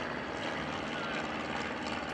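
Steady drone of a light single-engine liaison plane's piston engine and propeller as it flies past overhead.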